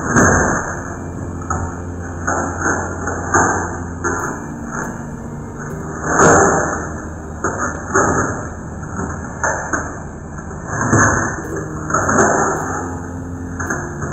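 Irregular knocks, rattles and clanks of a cash register being pried and wrenched open with a screwdriver, with the loudest clatters about six seconds in and again around eleven to twelve seconds, over a steady low hum.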